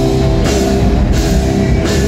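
Post-hardcore band playing live and loud: distorted electric guitars holding chords over a drum kit, with a cymbal wash about half a second in and again near the end.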